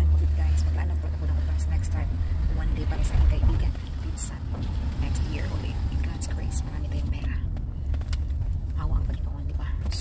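Low, steady rumble of a car's engine and road noise heard inside the cabin, stronger in the first couple of seconds.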